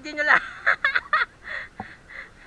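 A person laughing and squealing in short, high-pitched bursts, ending in a few breathy laughs.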